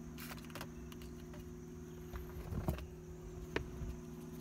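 A few faint clicks and light knocks of small loose parts being handled in a car's console tray, over a steady low hum.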